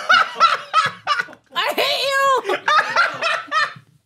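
A woman laughing in quick bursts, with a drawn-out pitched groan that rises and falls about two seconds in: a disgusted reaction to a mouthful of cottage cheese.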